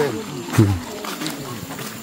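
Two short, falling vocal calls from people in the first second, the second one low-pitched, like a man's 'oh'.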